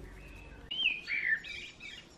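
A songbird singing one short phrase of gliding, warbled whistles, starting just under a second in.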